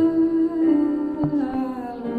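A woman singing or humming long held notes over sustained electric keyboard chords in a live performance, the melody stepping down about one and a half seconds in.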